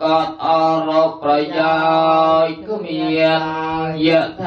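Theravada Buddhist chanting: several voices chanting together in long held phrases over a steady low tone.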